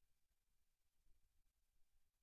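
Near silence, with only a faint low rumble.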